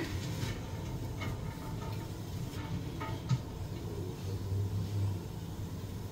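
A utensil stirring onions and garlic sautéing in a stainless steel stockpot, with a few light scrapes and small knocks against the pot over a low, steady hum.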